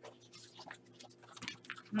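Sheets of white card being handled and lifted off a cutting mat: faint, scattered paper rustles and light taps.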